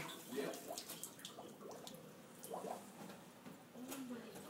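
Faint, irregular dripping and trickling of sewage backing up out of a wall-mounted drinking fountain and running down onto the floor. It is the sign of storm-flooded sewer backflow through a line with no backflow-prevention valve.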